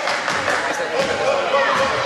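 Voices calling out in a large gym hall, with a basketball being dribbled on the wooden court.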